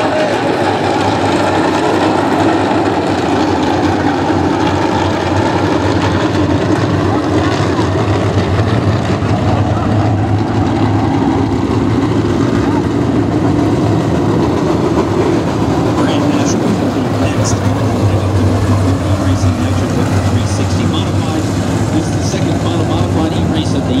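A pack of dirt-track modified race cars running together at low speed, a steady, loud rumble of many engines as the field rolls around under caution and lines up for a restart.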